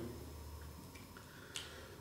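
Quiet room tone with a low steady hum and a few faint small ticks, and a brief faint hiss near the end.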